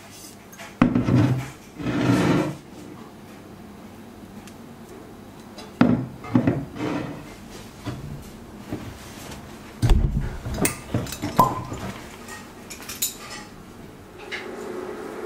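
Handling noise of objects on a wooden tabletop: two longer rubbing noises in the first few seconds, then a scatter of sharp knocks and clinks, thickest in the last few seconds.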